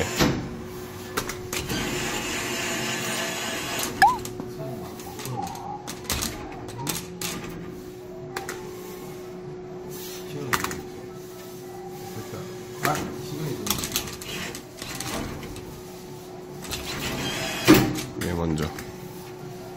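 Claw crane machine working: its motor whirs as the claw moves and drops onto the plush toys, with scattered clicks and knocks over a steady hum. The machine's own music and sounds are switched off.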